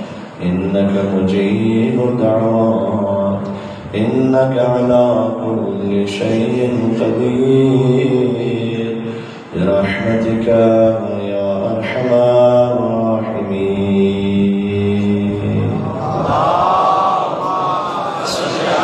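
A man's voice chanting a recitation through a microphone, in long melodic held phrases with short breaks for breath about four seconds in and again near the middle, rising to a higher pitch near the end.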